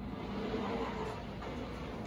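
The roller of a flatbed sign application table runs steadily along its rails, pressing printed diamond grade reflective sheeting down onto a sign blank. It makes an even rolling rumble.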